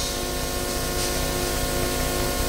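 Steady hiss with a faint, even hum from a public-address microphone and loudspeaker system, with no voice on it.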